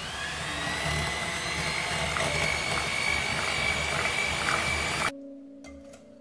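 Electric hand mixer running with its beaters in a glass bowl of pumpkin pie filling, its motor whine rising as it winds up to speed and then holding steady. It cuts off suddenly about five seconds in.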